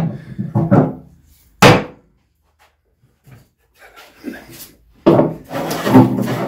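A wooden mallet strikes the maple slab once, sharply, about a second and a half in. Near the end, a hand plane is pushed along the rough maple board with a long scraping cut.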